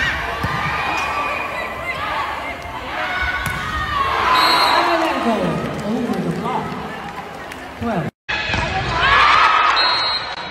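Volleyball arena crowd cheering and shouting during a rally, with players' calls and the thud of the ball on hands. The cheering swells about four seconds in as the point is won. After a brief dropout near eight seconds, it rises again.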